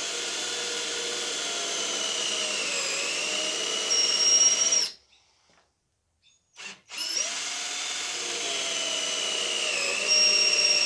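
Cordless drill boring pocket holes through a pocket-hole jig into timber. The motor's whine drops in pitch as the bit bites into the wood, then picks up again. It stops about five seconds in and starts again about two seconds later.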